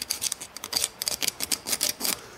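Small flat needle file scraping in quick short strokes across the cut edges of a metal locomotive chassis, deburring and rounding off sharp edges.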